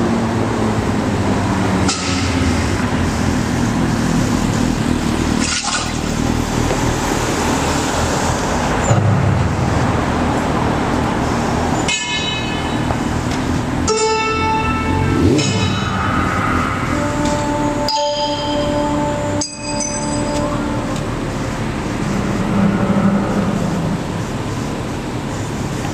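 Steady outdoor street noise with traffic. From about halfway, a run of bell-like chiming tones sounds over it.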